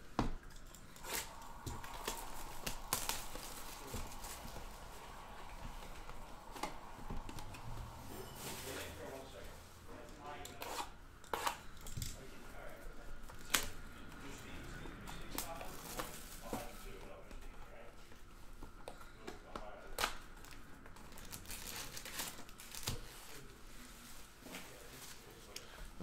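Plastic wrapping on a baseball card box being torn and crinkled by hand, with scattered sharp crackles and light taps of cardboard packaging.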